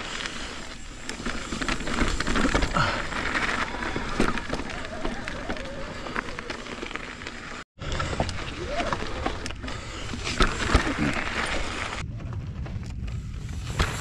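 Mountain bike tyres rolling and crunching over granite rock and loose gravel, with the bike rattling, heard from a helmet-chin camera. The sound drops out briefly about halfway and turns quieter for the last two seconds.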